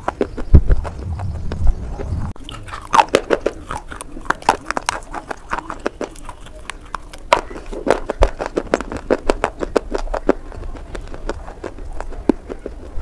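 Close-miked, sharp, irregular crunches of a person biting and chewing pieces of a slate clay bar, with a low rumble during the first two seconds.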